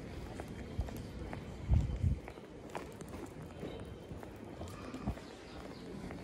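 Footsteps of someone walking on stone paving, irregular clicks and scuffs over a steady street background, with two heavy low thumps about two seconds in.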